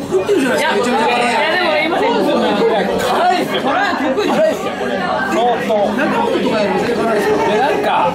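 Speech only: a man talking at a table, with the chatter of other diners in a large, busy room behind.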